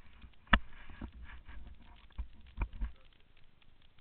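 Mountain bike rolling down a rough dirt trail: a low rumble from the tyres, with sharp knocks and rattles from the bike as it hits bumps. The loudest knock comes about half a second in, and several more follow near the middle.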